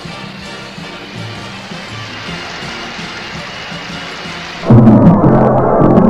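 Parade balloon theme music playing at moderate level, then a much louder passage of the music cuts in suddenly near the end.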